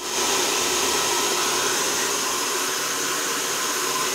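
Handheld hair dryer running steadily as it blows long hair dry: an even rush of air with a faint steady whine.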